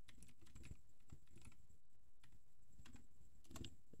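Faint computer keyboard typing: quick, irregular keystrokes.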